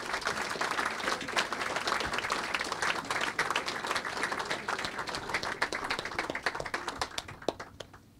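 Audience applauding: dense clapping from many hands that thins out and fades near the end.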